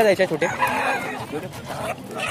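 Chickens at a poultry market: a rooster crows once, for about a second, over people talking.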